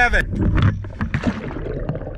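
Wind and water noise on the open deck of an offshore boat, with voices briefly at the start.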